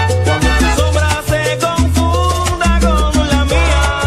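Salsa music played loud through a sonidero's sound system: an instrumental stretch with a strong bass line and steady percussion, no singing.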